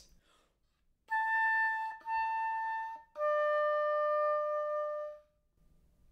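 Oboe playing the final notes of an etude: a high A with the standard fingering, then the same high A with a harmonic fingering, which gives a rounder, more covered tone, then a lower held D that dies away softly (smorzando).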